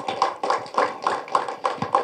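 Applause: a small group clapping by hand, the separate claps distinct and uneven, several a second.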